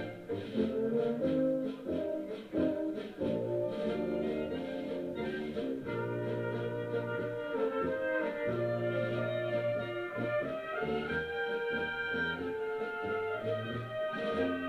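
Blaskapelle (Central European brass band) playing a tune: brass and clarinets in held chords and melody over a low brass bass line.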